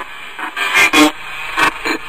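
Opening of a rap track: a faint steady hiss broken by about four sharp, loud hits in the second half.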